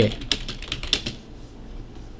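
Computer keyboard typing: a quick run of keystrokes that stops about a second in, while Chinese text is entered into an HTML editor.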